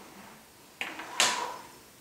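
Hands handling the removed plastic landing gear and lower frame plate of a small RC helicopter: a brief scrape and rustle about a second in, after a quiet start.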